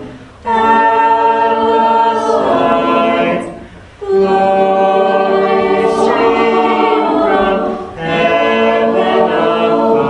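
An a cappella vocal group singing held chords without instruments, in three long sustained phrases with short breaks between them, about four seconds apart.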